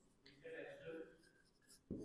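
Marker pen writing on a whiteboard, faint: two short strokes about half a second and a second in, otherwise near silence.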